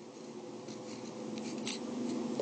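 A pen writing a few short, faint strokes on the page: the number 5 being written, over a faint steady hum.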